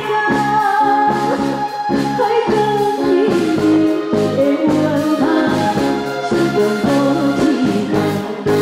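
A woman singing into a microphone with a live band of drums, keyboards and guitar, holding one long note over the first few seconds before the melody moves on over evenly pulsed band chords.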